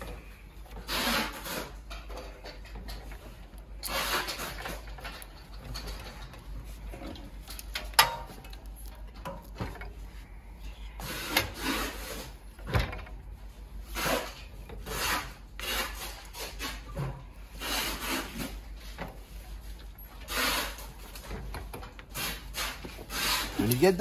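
Handling noises from a Consew industrial sewing machine head being tilted back on its hinges and then fitted back into the table: irregular rubbing and scraping with a few sharp knocks.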